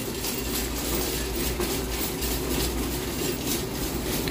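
Shopping cart being pushed across a hard store floor, its wheels and wire basket rattling steadily.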